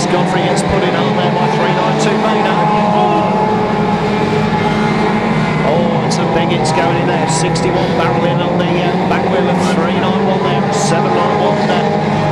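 A pack of banger racing cars running and revving together, several engines heard at once, with short sharp high-pitched noises scattered through.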